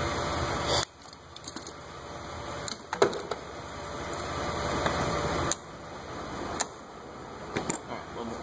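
A steady mechanical noise cuts off abruptly under a second in. Then come scattered light clicks and knocks of hands working on coolant hose clamps and plastic parts in a car's engine bay.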